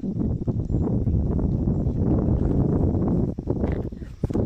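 Wind buffeting the phone's microphone: a steady, low, gusting rumble.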